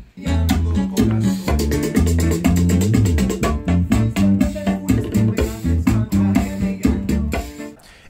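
Bachata music with an electric bass guitar playing a rhythmic bass line alongside guitar. It starts right at the opening and stops about half a second before the end.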